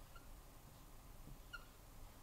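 Two short, faint squeaks of a marker writing on a whiteboard, about a second and a half apart, over near-silent room tone.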